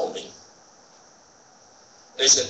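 A man's spoken word trailing off, then a pause holding only a faint, steady high-pitched hiss.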